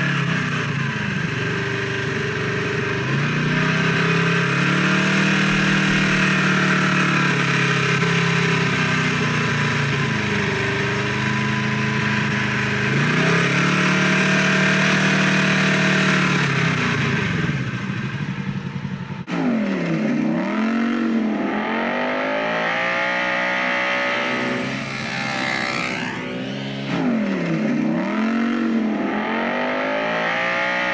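Polaris RZR side-by-side engine running under throttle while driving over sand, its revs rising and falling. The sound breaks off abruptly about two-thirds of the way in. After that the revs drop and climb back twice in quick swoops.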